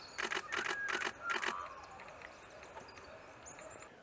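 Camera shutter firing a rapid burst of about six clicks in a second and a half.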